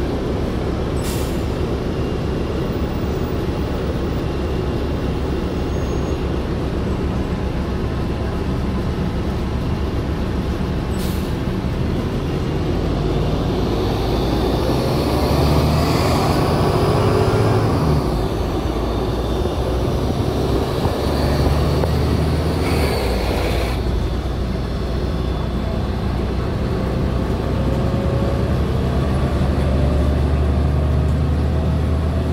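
2008 New Flyer city bus engine heard from inside the bus: a steady low drone that rises in pitch as the bus pulls away and again near the end, with a few short bursts of air hiss.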